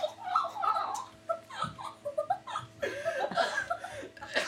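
A teenage boy and girl laughing hard in repeated bursts, with a brief lull just after the middle.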